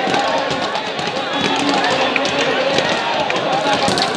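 Dense crowd of many voices shouting and calling at once, with frequent sharp clacks of bamboo lathi sticks striking the men's shields.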